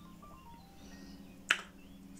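Quiet background music with a single sharp finger snap about one and a half seconds in.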